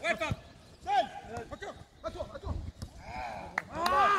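Men's voices calling and shouting to each other across a football pitch, getting louder near the end, with a few short knocks in between.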